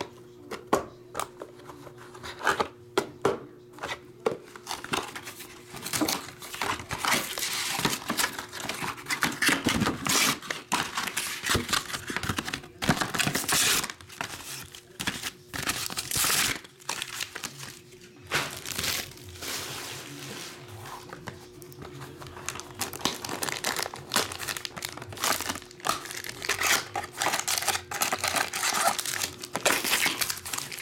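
Plastic shrink wrap and foil wrappers on trading-card packs crinkling and tearing as they are handled and unwrapped, in irregular rustling bursts.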